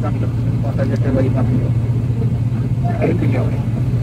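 Airliner engines droning, heard from inside the cabin: a steady, loud low hum that does not change.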